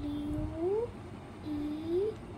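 A child's voice making two long drawn-out sounds, each held level and then rising in pitch at its end, the second starting about one and a half seconds in.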